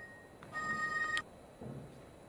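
A short electronic beep: a steady high tone lasting under a second, starting about half a second in and cutting off suddenly with a click.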